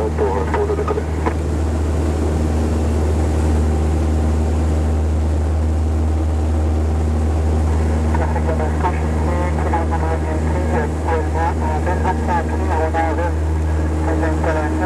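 Piston engine and propeller of a single-engine high-wing light aircraft at takeoff power, a loud steady drone heard inside the cabin through the takeoff roll and lift-off. A voice talks over it in the second half.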